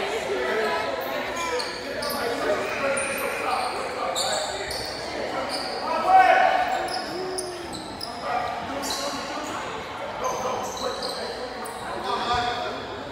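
Basketball game in a gym: sneakers squeaking sharply and repeatedly on the hardwood floor, a basketball bouncing, and players and spectators calling out.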